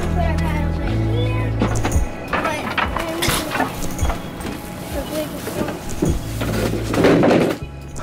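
Background music with indistinct voices, and a series of sharp knocks and clatters as a plastic storage cabinet is opened and wooden canoe paddles are handled. A louder, noisy clatter comes near the end.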